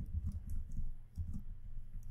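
Typing on a computer keyboard: a run of quick, irregular key clicks as a line of code is entered.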